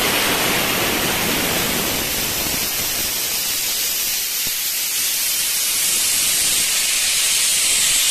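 Compressed air hissing out of a portable air compressor's tank as it is emptied, a steady unbroken hiss.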